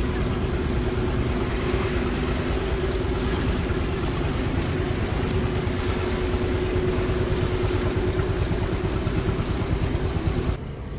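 Diesel engine of a wooden fishing boat running steadily at idle, a constant low hum over a rapid low pulsing.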